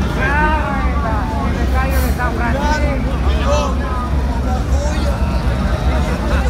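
People talking over a steady low rumble, the chatter of a crowded concert venue.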